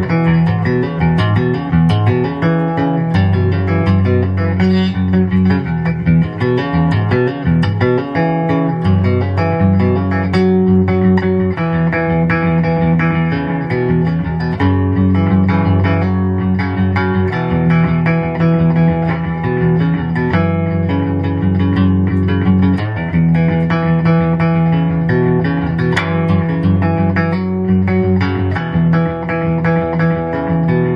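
Cigar box guitar played solo: an instrumental, folksy tune of picked notes over low notes that ring on for several seconds at a time.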